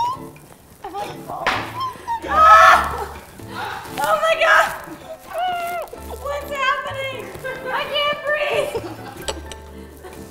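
Laughter and wordless vocal sounds from two women over background music with a steady repeating bass line.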